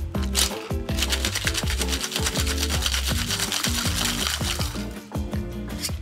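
Ice rattling hard inside a metal cocktail shaker as the drink is shaken to chill and dilute it: a fast, even rattle from about a second in until near the end, over background music.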